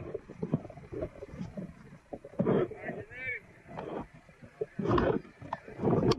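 Indistinct voices calling out over uneven, gusty outdoor noise, with louder bursts about two and a half, five and six seconds in.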